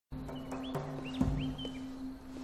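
Small birds chirping in short rising-and-falling notes over a low, steady droning tone, with a few light knocks and a heavier thump about a second in.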